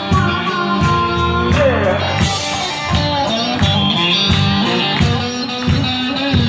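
Live blues band playing an instrumental break: harmonica wailing with bent notes and electric guitar over a steady drum beat.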